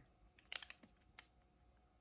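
A few faint clicks from a Koh-I-Noor Magic clutch lead holder being handled, between about half a second and just over a second in; otherwise near silence.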